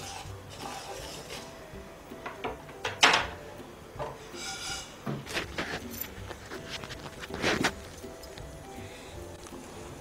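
Faint background music, with a few scattered clinks and knocks of kitchen utensils against a pan. The loudest clinks come about three seconds in and again about seven and a half seconds in.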